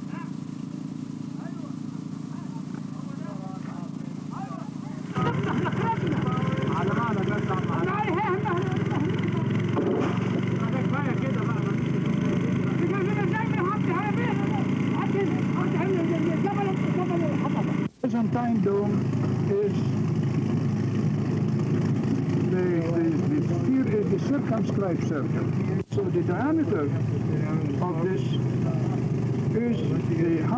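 A steady hum for about five seconds, then people talking over steady background noise, with two brief dropouts in the sound, one a little past the middle and one near the end.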